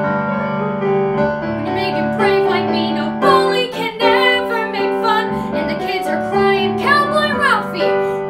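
A boy singing a musical-theatre song over piano accompaniment. The piano carries the opening, the voice comes in about two seconds in, and a sliding sung note falls near the end.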